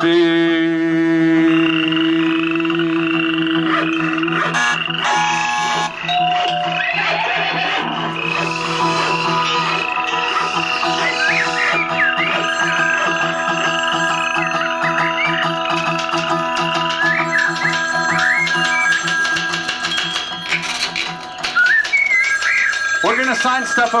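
Piano accordion holding long sustained chords with acoustic guitar, with short high warbling sounds over the top through the middle. This is the instrumental close of a live song. Near the end it gives way to applause and voices.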